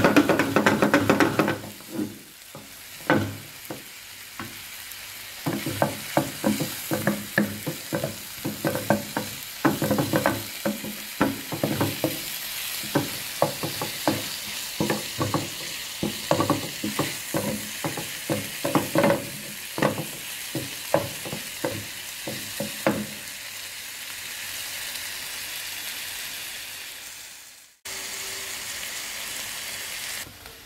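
Shrimp and broccoli sizzling in a frying pan with a steady hiss, while a wooden spatula scrapes and knocks against the pan in quick runs of strokes. The strokes stop for the last several seconds, leaving the sizzle alone, which drops out briefly near the end.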